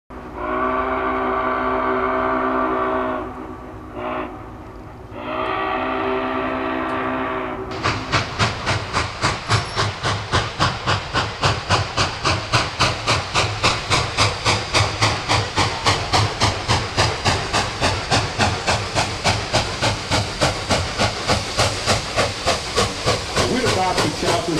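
Steam locomotive: its whistle blows a long blast of several notes at once, a short toot, then a second long blast, and then the engine's exhaust chuffs in a steady beat of about three chuffs a second.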